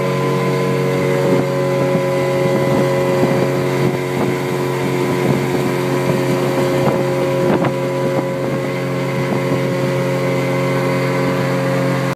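Two-stroke outboard motor on a 1988 Sea Ray Seville running steadily at about 5500 RPM with the boat up on plane, its pitch holding constant. Wind on the microphone and a few short knocks come through in the middle.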